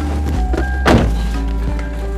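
Background film music of steady held tones, with a single loud thunk about a second in: a car door shutting.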